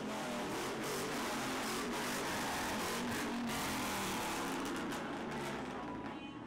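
Lifted pickup truck driving past with its engine running, fading near the end, with music playing underneath.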